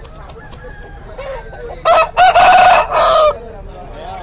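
Rooster crowing once, about two seconds in: a short first note, then a long drawn-out call with a brief break near its end, lasting about a second and a half.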